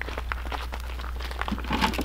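Footsteps crunching on gravel, with scattered small clicks and rustles, over a steady low hum.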